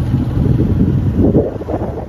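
Wind rushing over the microphone with a low road and engine rumble from a moving vehicle, easing off near the end.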